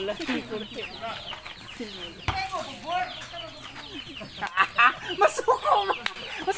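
Chickens clucking, mixed with players' shouted voices, and a sharp thump about two seconds in.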